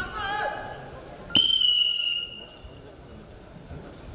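Referee's whistle blown once, a single steady high blast of about a second that starts with a sharp crack, signalling a fall (pin) in freestyle wrestling.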